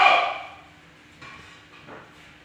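A single loud, short vocal call, a shout or bark, that peaks at the start and dies away within about half a second, followed by faint scuffling.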